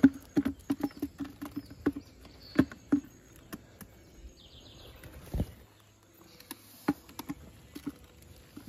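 Slatted matapi shrimp trap being handled and knocked about on grass: a quick run of irregular taps and rattles for the first three seconds, then a few scattered knocks and a single low thud about five seconds in.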